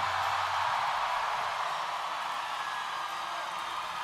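Large festival crowd cheering and applauding as a song ends, a steady roar of voices and clapping. A low held bass note from the stage dies away about half a second in.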